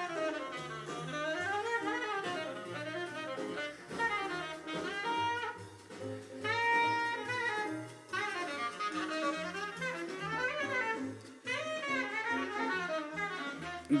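Jazz playing over a home hi-fi stereo: a melodic horn line over a moving bass line.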